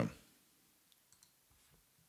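A few faint computer clicks, about a second in, over very quiet room tone.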